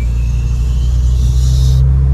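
Volkswagen Jetta TSI's turbocharged four-cylinder engine pulling under acceleration, heard from inside the cabin. It has a deep rumble and the new turbo's whistle rising as it spools. A high hiss rides along and cuts off suddenly near the end.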